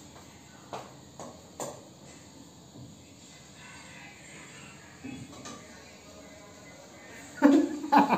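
Light clicks and knocks of a spoon against a pan as sauce is spooned onto cooked chicken feet: a few in the first two seconds and one more about five seconds in. A woman's voice comes in near the end.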